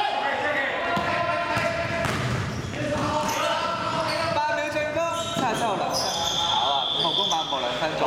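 Basketball game play in a large gym hall: the ball bouncing on the court amid players' shouts and calls. Near the end a high, steady squeal lasts about a second and a half.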